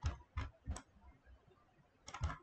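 Three quick clicks on computer controls, about a third of a second apart, within the first second.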